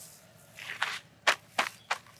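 Plastic bait bag and woven sack being handled: four short, sharp rustles over about a second.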